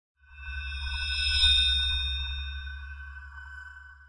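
Electronic intro logo sting: a low drone under several bright, sustained ringing high tones, swelling in over the first second and a half and then slowly fading away.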